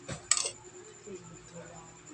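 A metal spoon clinking and scraping against a ceramic plate while scooping food: a quick cluster of sharp clinks about half a second in, then quiet.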